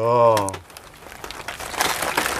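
Plastic sachet packets crinkling and rustling as they are handled, growing louder in the second half.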